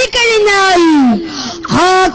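A boy's high voice declaiming through a microphone in a drawn-out, sing-song style: a long held note slides down in pitch through the middle, then a fresh held note begins near the end.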